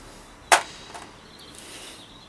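A single sharp metallic click about half a second in, then a faint tick, from a small metal brake-cable adjuster being handled and taken apart at the bike's brake lever.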